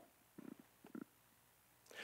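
Near silence: room tone in a pause of speech, with two faint brief sounds about half a second and a second in.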